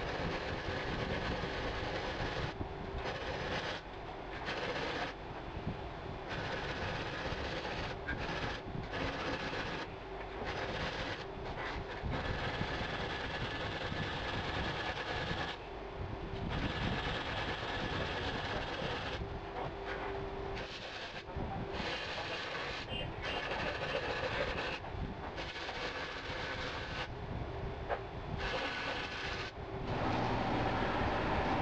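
Steel edges of a knife's handle tang being smoothed by abrasion: a continuous rasping noise that breaks off briefly every few seconds.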